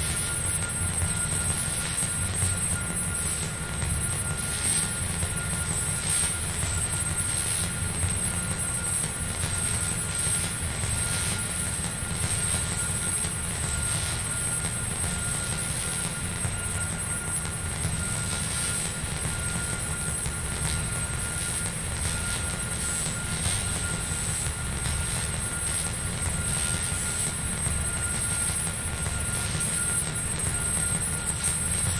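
Electronic drone music: a steady low rumble under a thin held tone in the middle range and two high whistling tones, with no beat or melody.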